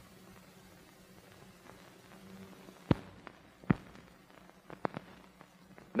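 Hiss and low hum of an old optical film soundtrack, broken by a few sharp clicks and pops typical of film splices and print damage. The two loudest come about three seconds in and just under a second later, with smaller ticks near the end.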